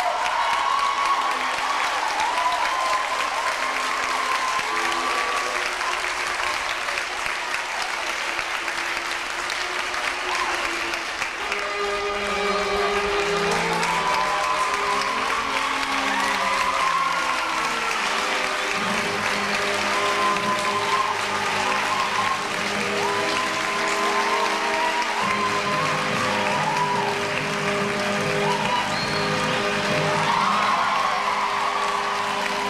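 Audience applauding steadily over music with a melody, joined about twelve seconds in by low bass notes.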